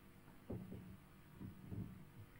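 Faint low thuds, one about half a second in and a few more near the end, over a quiet steady room background.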